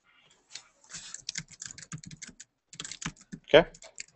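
Quick, irregular clicking of typing on a computer keyboard for about three seconds, followed by a short spoken "okay".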